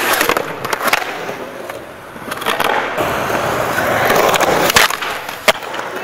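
Skateboard wheels rolling and carving across a concrete bowl, a steady grinding roll with knocks of the board and trucks, two sharp ones near the end.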